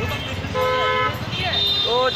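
A vehicle horn toots once, a steady half-second honk about half a second in, against street traffic; a higher steady tone sounds from about one and a half seconds on.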